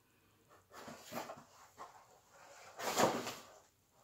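Rustling and handling of manga volumes and their packaging: a few brief rustles, the loudest about three seconds in.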